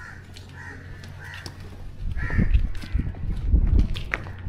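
A bird calls several times with short, harsh calls. From about halfway a louder low rumble of noise on the microphone sets in.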